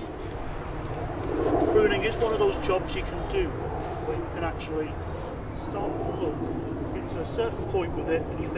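Outdoor garden ambience: faint, indistinct voices over a steady low rumble.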